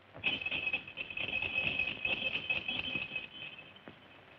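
Sleigh bells jingling in a steady high shimmer, as a horse-drawn sleigh approaches, fading out near the end.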